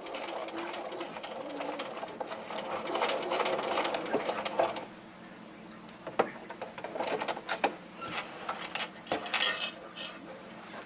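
Domestic electric sewing machine stitching a seam, a steady run of needle strokes that stops about halfway through. Then a few scattered clicks and rustles as the fabric is drawn out from under the presser foot.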